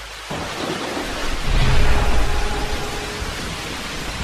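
Thunderstorm: rain comes in suddenly just after the start, and a low rumble of thunder swells up about a second and a half in, then eases.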